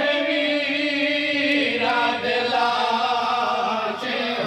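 A noha, a Shia lament, chanted in long, slowly wavering held notes.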